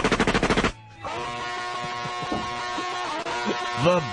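A rapid burst of machine-gun fire, a comedy sound effect, that cuts off suddenly under a second in. Music with a steady sustained chord follows from about a second in.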